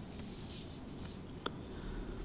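Quiet room tone in a pause, with a faint rustle in the first second and one sharp click about one and a half seconds in.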